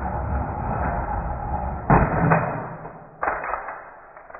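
Die-cast toy monster trucks rolling fast down an orange plastic six-lane toy track with a steady rattling rumble, then crashing onto a row of die-cast toy cars about two seconds in with a loud clatter, followed by another clatter a little after three seconds as they tumble onward.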